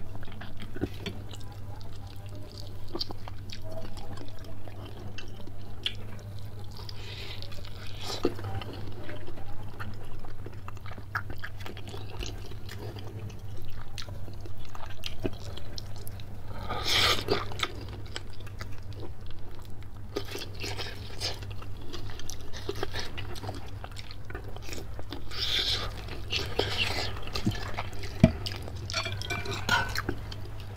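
Close-miked eating sounds from spicy bakso soup with noodles and chicken: chewing and crunching with small wet clicks. There are louder bursts of slurping noodles and broth about halfway through and again near the end, over a steady low hum.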